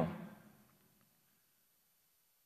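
Near silence, after a man's narrating voice dies away within the first half second.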